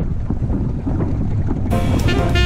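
Strong wind buffeting the microphone: a steady low rumble. Near the end, jazzy music with brass starts.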